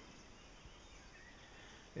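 Near silence: faint outdoor background noise in a pause between words.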